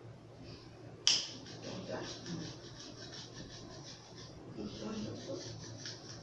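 A kitchen knife sawing through a thick foam mattress in quick, even back-and-forth strokes, with a sharp click about a second in.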